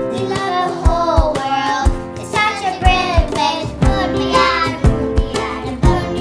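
A child singing a children's song over backing music with a steady beat.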